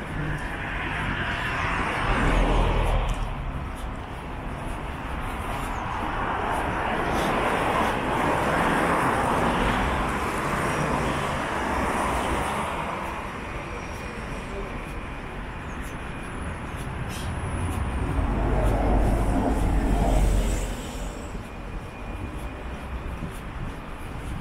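Street traffic: cars and buses passing close by on a city road, the noise swelling and fading as each passes, loudest about two seconds in, through the middle, and again near twenty seconds in.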